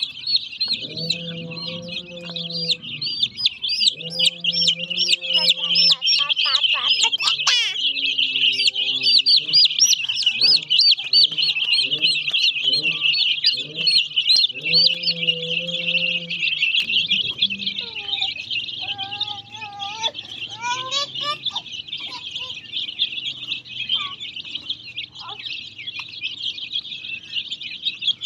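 A crowd of baby chickens peeping all at once: a dense, continuous high-pitched chirping with no let-up.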